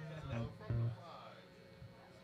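A few short, low plucked notes on an amplified electric guitar in the first second, then quieter, with faint voices in the background.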